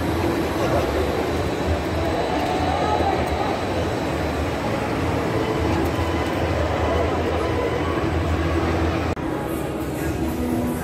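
Spinning amusement park ride running in a large indoor hall: a steady mechanical rumble under crowd noise, cut off about nine seconds in.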